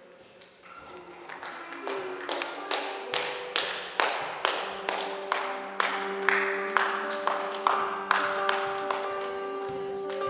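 Music with held chords swells in, joined about two seconds in by steady hand clapping in time, a little over two claps a second.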